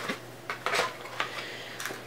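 A handful of light clicks and taps of small cosmetic sample containers and packaging being handled on a table, the sharpest a little under a second in.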